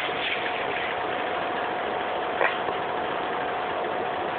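Steady hiss of background noise with a faint constant tone running through it, and one short click about two and a half seconds in.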